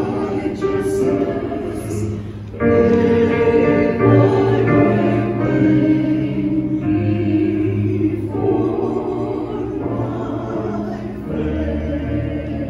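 Small mixed church choir singing a slow anthem in sustained chords, phrase by phrase, with a strong new phrase entering about two and a half seconds in.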